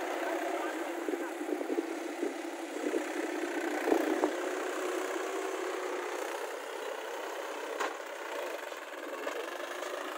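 Mahindra tractor's diesel engine running steadily while it pulls a puddler through flooded paddy mud on iron cage wheels, with a couple of sharp knocks about four seconds in and again near eight seconds.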